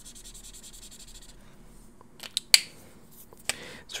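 Faber-Castell Pitt Artist Pen dual marker tip scrubbing across smooth sketchbook paper in a quick run of short scratchy strokes during the first second or so. A few sharp ticks follow, the loudest about halfway through.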